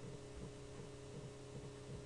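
A faint, steady electrical hum of several low tones over light hiss.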